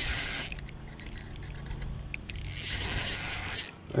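Spinning reel being cranked against a hooked crappie: a mechanical whirring of the reel in two spells, one at the start and one from about two seconds in until shortly before the end.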